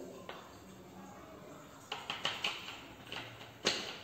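Plastic bottle being handled: a few short crinkles and clicks about two seconds in, then one sharp click near the end as its screw cap is twisted.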